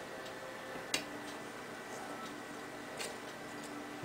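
A single sharp click about a second in, with a fainter one near the end, from hands handling a tin can, over a faint steady hum.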